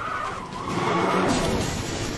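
Sound-effect vehicle: an engine with tyres skidding over rough ground and a rush of noise. It grows louder about half a second in.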